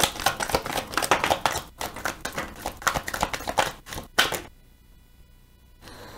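A deck of tarot cards shuffled by hand: a rapid patter of cards slapping and riffling against each other that stops about four and a half seconds in.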